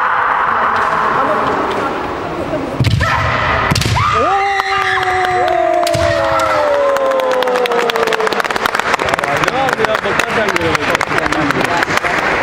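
Kendo kiai: two women fighters let out long, high yells that are held and slowly fall in pitch for several seconds, one overlapping the other, with a sharp crack of bamboo shinai about three seconds in. Rapid clattering taps fill the last few seconds.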